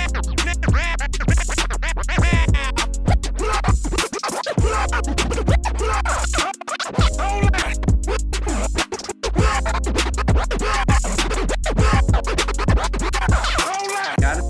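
Turntable scratching of a scratch sample in Serato DJ Pro, controlled through Phase in internal mode, over a hip-hop beat with a heavy bass: fast back-and-forth pitch swoops. The music cuts out briefly about four times.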